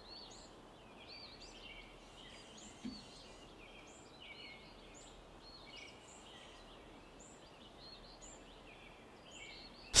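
Faint, continuous chatter of a foraging flock of brown-headed cowbirds: many overlapping short, high whistles and chips. A soft low thump about three seconds in.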